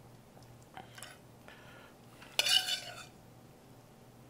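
Metal spoon clinking and scraping against the pans as shrimp are spooned out: a few light clicks, then one louder ringing clink a little past halfway.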